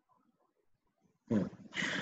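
Near silence, then a little over a second in a person's voice cuts in abruptly and loudly over the video-call audio.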